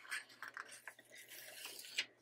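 Faint rustling and soft taps of paper being handled as a hand works the pages of a sticker book, with a slightly louder tap near the end.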